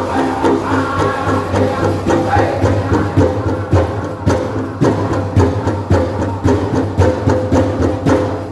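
Powwow drum group singing a jingle dress contest song over the steady beat of a big powwow drum, about two beats a second.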